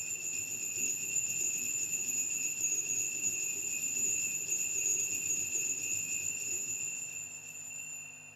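Altar bells (sanctus bells) shaken continuously as the chalice is elevated at the consecration, a steady high-pitched jingling ring that dies away near the end.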